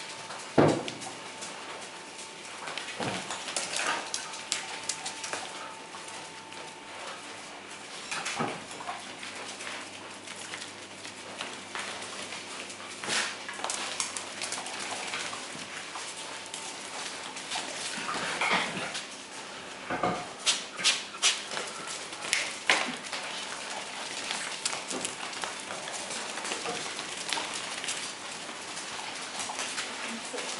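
Brown bear cubs moving about on a tiled floor, with scattered clicks and knocks and short animal calls. There is a busier run of sharp sounds about twenty seconds in.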